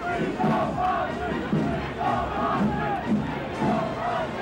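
A large crowd shouting and yelling, many voices overlapping at once with no single voice standing out.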